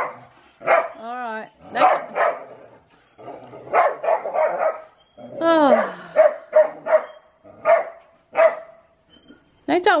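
Whippets barking repeatedly: about a dozen short barks at a fairly even pace, broken by two longer whining calls, the one near the middle falling in pitch.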